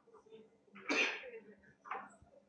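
A person sneezing once, loudly and suddenly, about a second in, followed by a shorter, fainter burst near the end.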